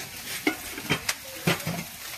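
Vegetables frying in a pan with a steady sizzle, broken by several sharp clicks about every half second.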